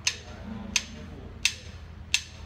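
Drumsticks clicked together four times at an even tempo, about two-thirds of a second apart: a drummer's count-in for the band.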